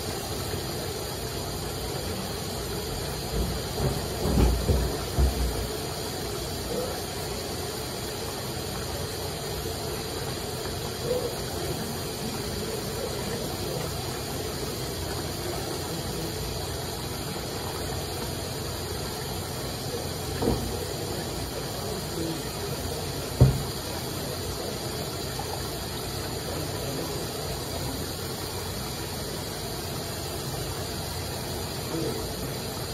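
Tap water running steadily from a faucet into a ceramic sink while wet clothing is rubbed and wrung by hand. A few dull thumps of handling break through, a cluster about four seconds in and a sharper knock about two-thirds of the way through.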